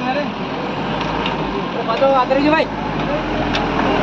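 Pickup truck engine idling with a steady low rumble, under men's voices.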